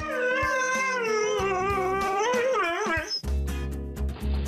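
Huskies howling in one long, wavering howl that stops about three seconds in, over background music whose bass comes in near the end.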